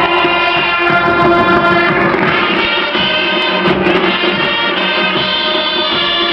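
High school marching band playing a slow passage of held chords, the harmony shifting every second or two.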